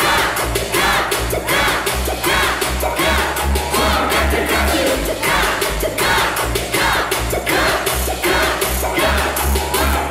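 Live hip hop concert: a bass-heavy beat pumped through the venue's sound system, with a rapper on the mic and the crowd shouting along.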